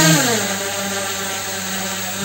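Both propeller motors of a V-Copter Wing L100 two-rotor drone running just after start-up, a steady whir with a faint hiss. Its pitch eases down slightly in the first half second, then holds steady. It is fairly quiet for a drone.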